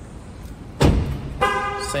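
A car door shutting with a heavy thump about a second in, then a short steady horn chirp from the Volkswagen Polo: the alarm's lock-confirmation beep, set by software to sound only when the car is locked.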